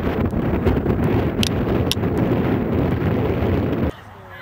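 Wind buffeting the camcorder microphone: a loud, rough low rumble that cuts off abruptly just before the end.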